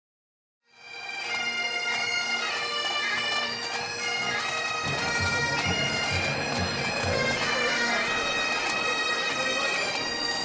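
Highland bagpipes play a tune over their steady drones, fading in just under a second in. A low, regular drumbeat joins about halfway through.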